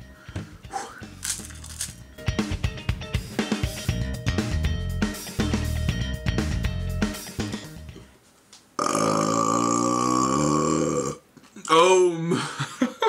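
Background music with a drum beat, then about nine seconds in a long, loud belch lasting over two seconds that sinks slightly in pitch. It comes from a stomach stretched by eating a large volume of food in one sitting.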